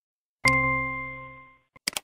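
A single electronic chime from the learning software: a struck, bell-like ding with a few clear pitches that fades over about a second, sounding as the tick is marked in the correct answer box. A couple of short clicks follow near the end.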